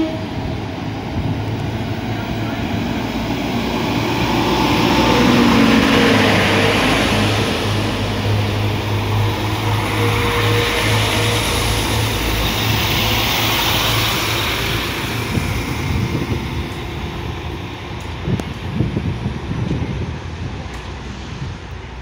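Diesel passenger trains at a station platform: a Class 195 diesel multiple unit comes in with its engine running while another train passes very close on the adjacent track. A steady low hum runs under a rushing of wheels and engine that swells twice, around five seconds in and again around twelve seconds, with a falling engine note during the first swell, then fades near the end.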